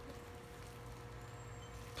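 Faint room tone with a steady electrical hum; no distinct handling sounds stand out.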